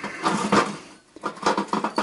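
Metal tools clinking and rattling as a hand rummages through a steel toolbox drawer, with a quick run of sharp clinks in the second half.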